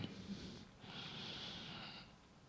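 A man's faint intake of breath, a soft hiss lasting about a second, starting just under a second in.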